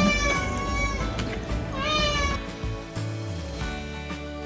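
Domestic cat meowing, begging for raw turkey: one long, level meow for about a second, then a shorter rising meow about two seconds in. Background music comes in after the second meow.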